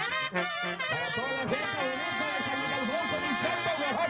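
Live Mexican brass band (banda de viento) playing, the tuba carrying a moving bass line under wavering held notes from the higher brass.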